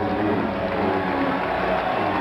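Stadium crowd noise with a muffled, echoing voice carried over the public-address system.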